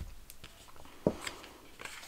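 Soft clicks and taps of tarot cards being handled and laid out on a cloth, with one sharper click about a second in.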